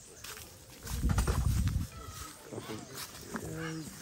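A loud low rumble from about one second in, lasting under a second, then a short held 'ooh' from a person near the end, over faint rustling.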